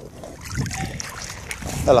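Shallow water sloshing and lapping around a dog wading shoulder-deep over a rocky bottom, a low uneven rumble.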